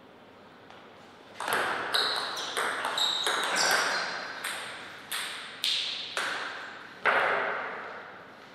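Table tennis rally: the plastic ball clicks off the rackets and the table in quick alternation, about a dozen hits over five to six seconds, each with a short ringing echo in a large hall. The rally starts about a second and a half in and ends with one loud hit near the end.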